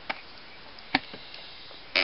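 Faint steady room hiss with a single sharp click about a second in, and a fainter tick just after the start.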